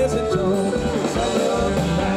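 Live band music: a lap steel guitar played with a slide, its notes gliding in pitch, over drums and upright bass.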